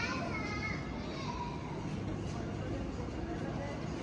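Voices: a short pitched vocal sound in the first second, then fainter children's voices over a steady background noise, with no clear words.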